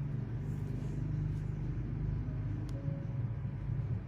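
A steady low rumble, like a running machine or background engine noise, continuing without a break.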